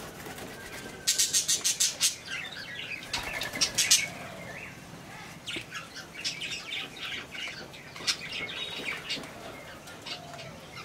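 Budgerigars chattering. Two loud bursts of rapid pulses, about eight a second, come about a second in and again near four seconds, followed by scattered short chirps.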